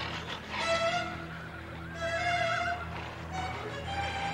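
Horses whinnying among a waiting crowd, mixed with held string notes of a film score.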